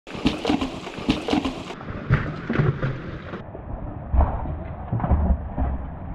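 Mountain bike clattering over rocks: a run of sharp knocks and rattles from the bike and tyres striking stone, with heavy low thumps from about four seconds in.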